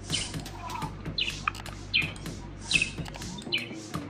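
A bird chirping in the background: a few short chirps that fall in pitch, about one a second, over a steady low hum.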